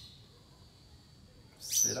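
Faint birds chirping in the background during a quiet pause, then a man starts speaking near the end.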